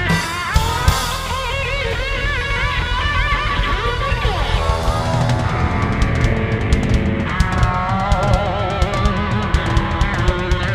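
Cow-punk rock band playing live without vocals: an electric guitar lead with wavering, bent notes over bass and drums. The drums and cymbals get busier about halfway through.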